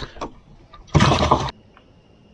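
A crappie dropped into the boat's livewell, a short splash lasting about half a second that cuts off suddenly.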